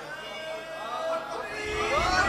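Several men's voices calling out in drawn-out, wavering tones, growing louder toward the end.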